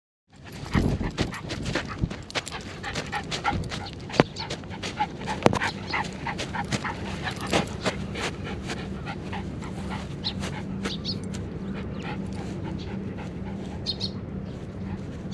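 Miniature schnauzer panting close by, with a quick run of sharp clicks and knocks through the first half.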